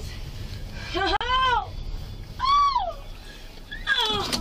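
A woman's voice letting out two high-pitched wailing moans, each rising and then falling in pitch, the first about a second in and the second, higher one past the middle.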